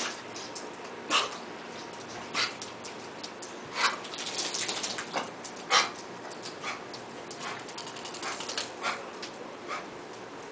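Two pit bulls moving and playing on a wet tiled floor: a few short, sharp noisy sounds one to two seconds apart, with lighter clicks between.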